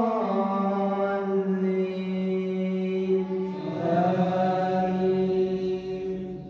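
A man's voice reciting the Quran in a melodic chant over a microphone, holding long drawn-out notes. A new phrase begins a little past halfway.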